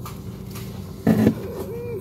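A man's short hesitation sounds in a pause of speech, one about a second in and a brief held tone near the end, over a steady low hum.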